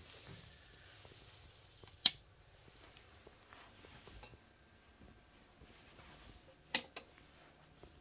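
Two sharp clicks about four and a half seconds apart, the second followed closely by a fainter one, over a faint hiss that drops away at the first click.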